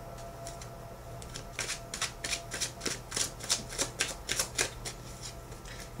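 A deck of tarot cards being shuffled by hand: a quick, uneven run of soft card slaps and clicks lasting a few seconds in the middle, then stopping.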